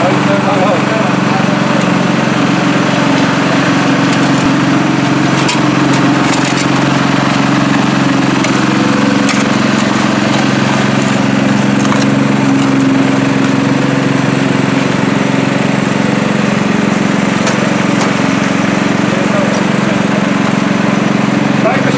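Small engine of a portable water pump running steadily, drawing water out of a flooded excavation through a suction hose.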